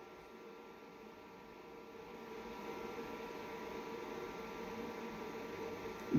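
Faint steady hiss and hum of a home recording setup's room tone, with a few thin steady tones, swelling slightly about two seconds in.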